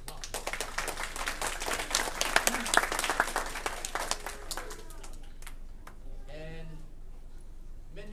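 An audience of young children applauding: a burst of clapping about four seconds long that tapers off, followed by voices.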